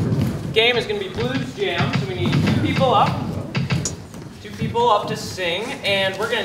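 Speech: a young man talking, with short pauses.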